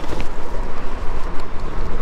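Wind buffeting the microphone, a steady rumbling noise.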